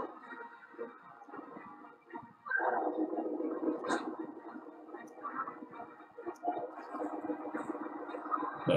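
TV series soundtrack playing back: sustained low tones of score and effects that swell louder about two and a half seconds in and hold, with a few brief clicks.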